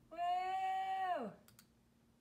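A woman's voice holds one steady hummed or sung note for about a second, then slides down in pitch and stops. Two quick mouse or trackpad clicks follow.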